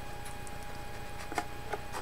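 Quiet room hum with a faint steady tone and a few light clicks, the clearest about two-thirds of the way through, from a handheld DMR radio being held in the hands as it boots up.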